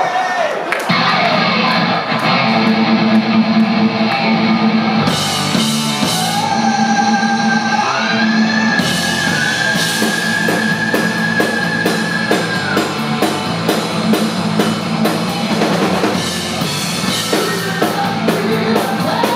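Heavy metal band playing live: distorted electric guitars and bass over a drum kit, opening a song. The band comes in just under a second in, the drums and cymbals fill out about five seconds in, and a long held high note sounds over a steady driving beat through the middle.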